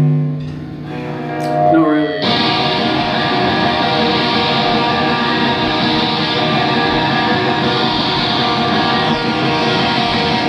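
A live hardcore band in a small room: a held guitar note fades and a few notes slide, then about two seconds in the whole band comes in at once with electric guitars, bass and drums, and plays on at full volume.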